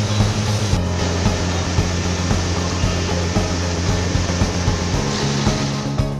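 Background music with steady bass notes under a loud, even rushing noise of running machinery in a grain-processing mill. The noise breaks off briefly about a second in.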